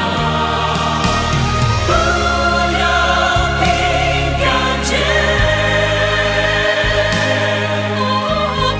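A choir singing a slow Mandarin gospel song in long, held notes over instrumental accompaniment.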